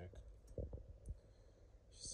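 Quiet room tone with a few faint clicks and soft low thumps around the middle.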